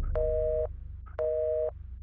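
Telephone busy signal heard over a phone: a two-tone beep sounds twice, about half a second on and half a second off, meaning the line the call was transferred to is busy. A low steady rumble runs underneath.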